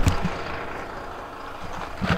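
A person falling into a hole on gravelly desert ground while holding the camera: a sharp knock or two at the start, then a steady rushing noise of the camera being jostled.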